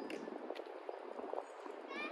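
Faint outdoor background with a few light, scattered taps and distant voices.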